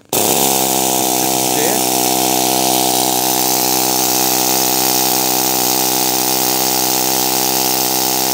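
Pneumatic needle scaler running free in the air, its hardened steel needles hammering out and back rapidly in a loud, steady buzz that starts as the trigger is pressed.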